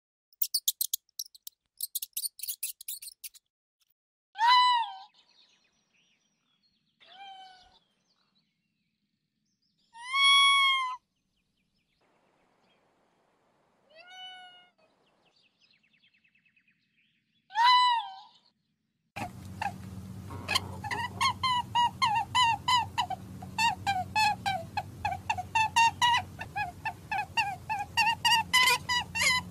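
A few rapid clicks in the first seconds, then five separate mewing animal calls a few seconds apart, each a short arching cry that falls away in pitch. From about two-thirds of the way in, music takes over, with a low drone and quick repeated notes.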